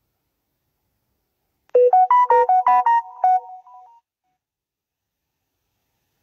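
A short tune of about eight quick, clear notes, beginning nearly two seconds in and over within about two seconds, trailing off into a fainter last few notes.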